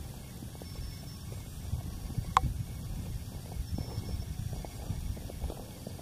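Low wind rumble on a handheld microphone outdoors, with faint irregular knocks and one sharp click about two and a half seconds in.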